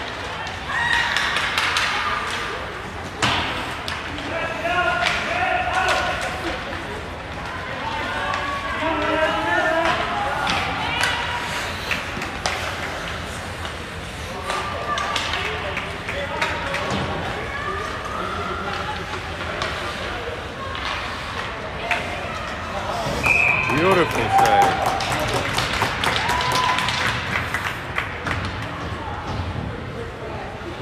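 Sounds of a youth ice hockey game in an indoor rink: indistinct shouting from players and spectators, with scattered sharp knocks of pucks and sticks against the ice and boards.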